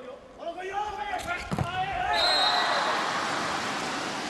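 A volleyball being hit hard twice in quick succession about a second in, the spike and the ball striking, amid voices in an arena. A crowd then cheers loudly from about halfway through as the point is won.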